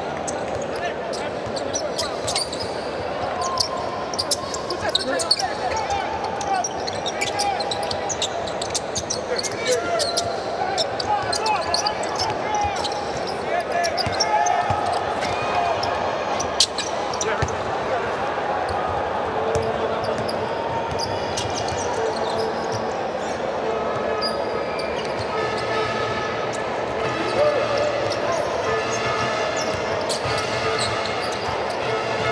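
Basketball game in an arena: the ball bouncing on the hardwood court, sharp squeaks and knocks from players' shoes, and scattered crowd voices. From about two-thirds of the way in, a held pitched note sounds again and again over the court noise.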